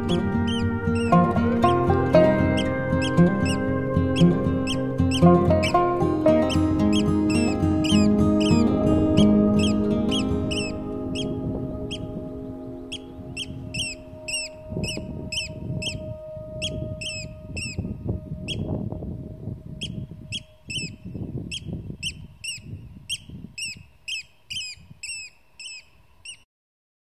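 Eurasian oystercatchers piping, a rapid series of sharp, high, falling calls, over soft plucked-string music that fades out around the middle. Low irregular rumbling comes in the second half.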